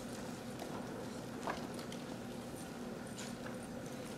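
A pen writing on paper: faint scratches and light taps, one a little louder about a second and a half in, over a steady low room hum.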